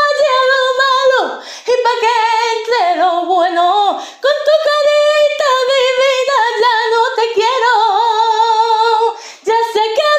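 A woman singing alone without accompaniment, in a high voice with sliding, ornamented notes. She sings long phrases with short breaks for breath about a second in, at four seconds and near the end.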